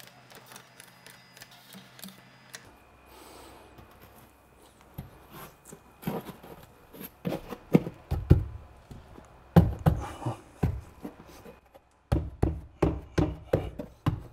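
Scattered knocks and taps from a foam building panel being set into a sealant-filled groove and pressed against the bench supports. A quick run of about three to four knocks a second comes near the end.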